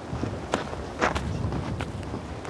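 Footsteps of a person walking on desert sand: a few crunching steps about half a second apart.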